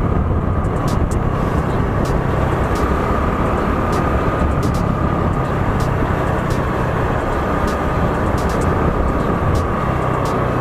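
Motorcycle riding steadily along a paved road: continuous engine and wind/road rumble, with a thin, steady high whine running through it.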